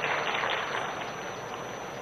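Steady crowd noise from a large audience, dying down slightly toward the end.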